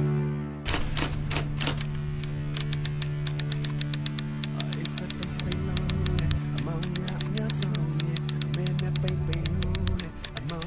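Rapid typewriter-style clicking, a few slower clicks and then a fast, steady run, over a steady low music drone: a sound effect for on-screen text being typed out.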